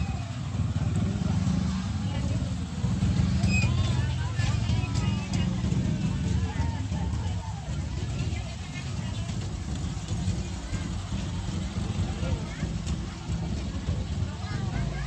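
Low, steady engine rumble of a slow-moving open-carriage passenger road train (kereta kelinci) passing close by, with people's voices chattering over it.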